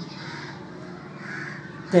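Crows cawing in the background, a few faint harsh calls.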